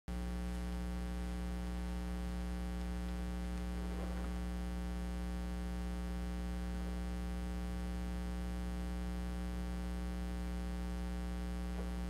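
Steady electrical mains hum: a low, unchanging buzz with a stack of even overtones.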